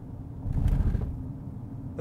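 A Chery Tiggo 8 Pro's front wheels and suspension going over a speed bump: a low thump about half a second in, over the steady low rumble of the tyres on the road. The suspension takes the bump well.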